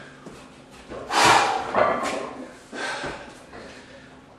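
A man breathing hard and forcefully through his nose and mouth while bracing under a heavy barbell before a squat. There are three sharp breaths, the loudest about a second in and a weaker one near the end.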